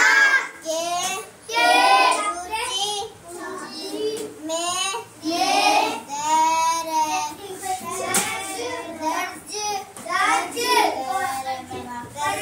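A young girl's voice reading aloud in a sing-song recitation, continuous with short pauses and some drawn-out syllables.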